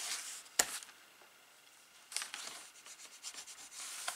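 A bone folder rubbed over kraft cardstock in short scraping strokes, pressing down a freshly glued hinge strip. A single sharp tap about half a second in.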